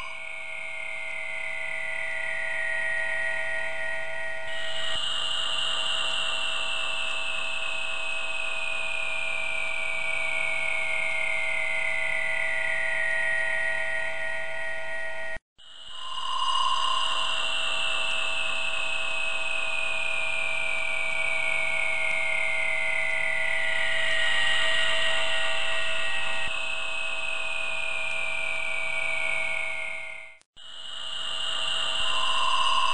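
Electronic flying-saucer hum, several tones held together, the highest gliding slowly downward for about thirteen seconds. Halfway through it cuts off suddenly, then starts again with a short beep and the same slow downward glide.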